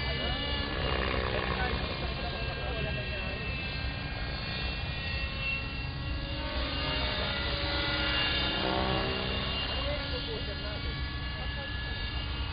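Hirobo Sceadu radio-controlled helicopter flying well out over the field, heard as a steady, distant whine of rotor and motor that shifts in pitch and swells slightly around the middle as it manoeuvres.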